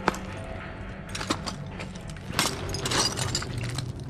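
Footsteps crunching and clinking over loose rubble and debris, with a sharp knock just after the start and several crackling steps later on.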